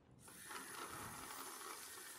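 Water running from a washbasin tap onto a small fire in a metal bowl, a faint steady rush that starts just after the beginning.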